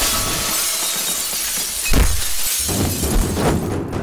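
A large pane of glass shattering as a body is kicked through it, a film fight sound effect: a long crash of breaking glass for about two seconds, then a heavy thud, and a lighter one near the end.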